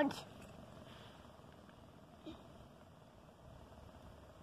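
Faint, steady bubbling and trickling of water draining out of a hollow ice shell through a hole in the ice.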